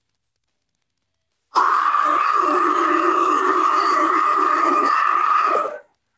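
Deathcore harsh vocal with the band's instruments stripped away: one long, held scream that starts about a second and a half in and cuts off near the end.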